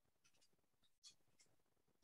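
Near silence on a video call, with a faint tick about a second in.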